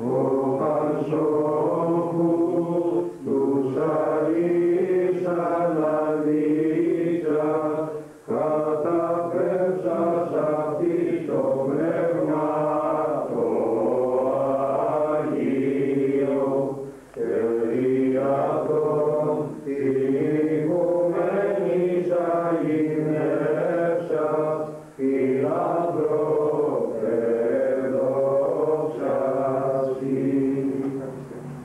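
Men's voices singing Byzantine Orthodox chant, a melody moving over a steady held low drone note. The singing breaks off briefly between phrases every few seconds.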